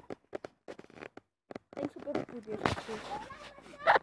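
Scattered clicks and knocks from a handheld phone being moved about close to the microphone. Faint voice fragments come in the second half, and a short louder burst follows just before the end.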